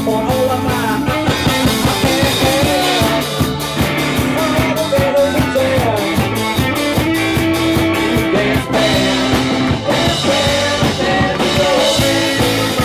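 Five-piece indie rock band playing live: drum kit, bass, electric guitars and keyboard, with a steady driving beat and gliding lead-guitar lines.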